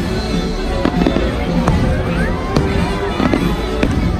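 Aerial fireworks shells bursting with sharp bangs, about one a second, over a music soundtrack that plays throughout.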